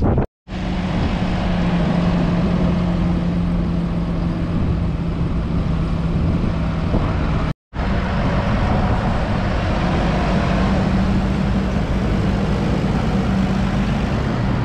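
Fendt 724 Vario tractor's 6.1-litre six-cylinder diesel engine running steadily at a constant pitch, with two brief silent gaps where clips are cut together, about half a second and seven and a half seconds in.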